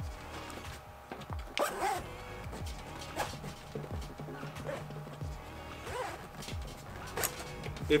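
A nylon backpack being handled and closed, with fabric rustling and zipper pulls.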